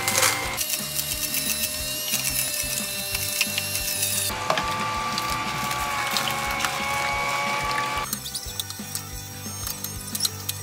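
Horizontal slow masticating juicer running, its auger crushing and grinding celery and other produce with a dense crackling and clicking. The sound shifts abruptly a couple of times.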